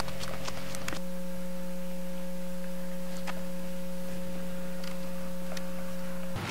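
A steady electronic hum made of a few held low and middle tones, unchanging in loudness, with a few faint ticks over it.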